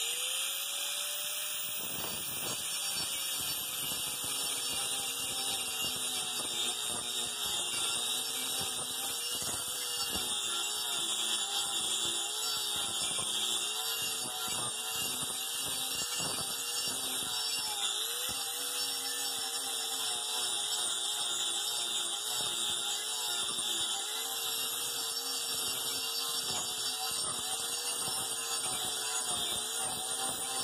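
Angle grinder with a 24-grit carbide disc grinding down a ridge on the face of a rough-sawn wooden board. It runs steadily, with a whine that dips and wavers as the disc is pressed into the wood.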